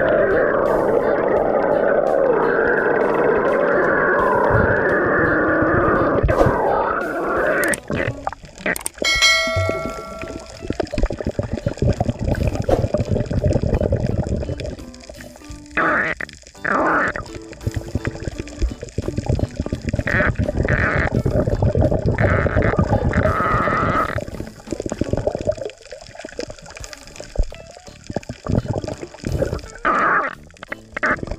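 Background music for the first several seconds, then muffled underwater sound from a submerged camera: water sloshing and bubbling in irregular gusts. A short ringing tone sounds about nine seconds in.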